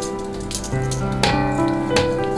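Background music: an instrumental piece of sustained notes that change in steps.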